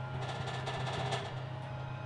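Fingers knocking a quick run of taps on the crust of a freshly baked sourdough loaf, giving a hollow sound: the sign that the loaf is baked through.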